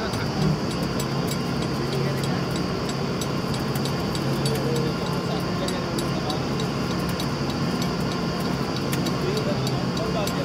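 Engine of a truck-mounted borewell drilling rig running steadily with a low hum, overlaid by a sharp, irregular crackle of clicks.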